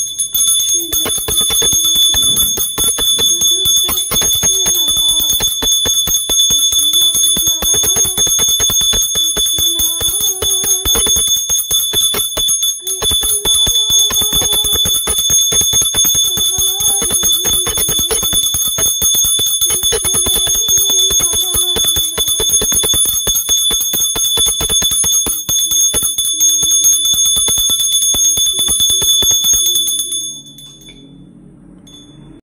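Puja hand bell rung rapidly and without pause during an aarti, a steady high ringing, with a melody sung along with it; both stop at the very end.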